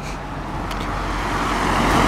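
A car approaching along the road, its engine and tyre noise growing steadily louder as it nears.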